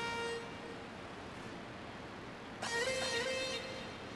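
Music sample played back over a hall's sound system: two long held notes, one fading out just after the start and a slightly higher one coming in for about a second near the end, with quiet room hiss between.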